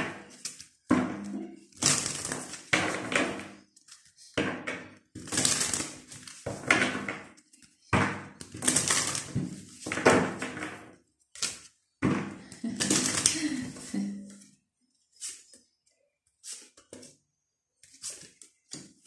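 A hand-held deck of oracle cards being shuffled, in repeated short rustling bursts, each about half a second to a second long. After about fourteen seconds the bursts become shorter and sparser.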